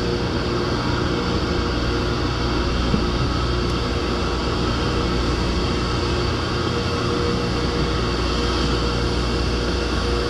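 Steady droning machinery hum with a few held tones over a constant rushing noise, unchanging throughout.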